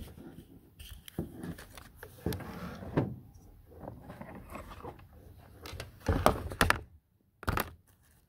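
Irregular clicks, knocks and handling rustle of an animal hair clipper's detachable blade being taken off and a new one fitted, with the clipper motor not running. The loudest knocks come in a cluster near the end.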